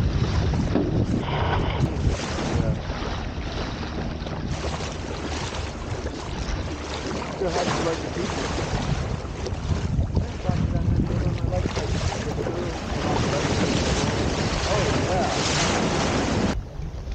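Wind buffeting the microphone over water rushing and splashing along the hull of a small wooden sailboat moving fast under sail, rising and falling in gusts.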